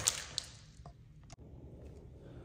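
Small handling noises: a sharp click right at the start, a lighter click just after, then a few faint ticks, as the removed TPMS sensor is handled by the wheel.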